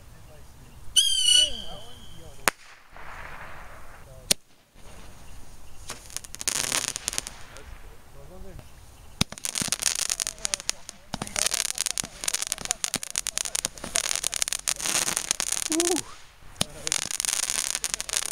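Consumer fireworks going off: a few sharp bangs in the first half, then long runs of dense crackling from the fireworks' crackling effects, loudest through the middle and near the end.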